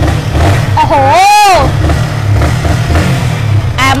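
A small sport motorcycle's engine running with a steady low rumble, while a woman gives one drawn-out exclamation about a second in that rises and falls in pitch.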